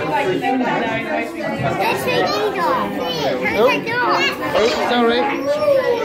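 Several children's voices chattering and calling out over one another.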